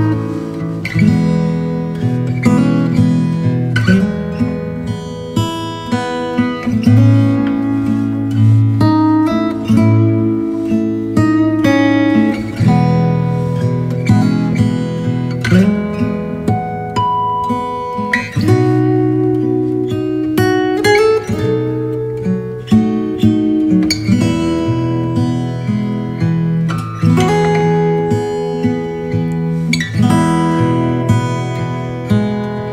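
Acoustic guitar playing, a run of plucked notes and strummed chords that ring and fade, with no singing.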